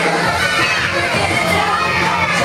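Many young children shouting and cheering together over loud pop dance music.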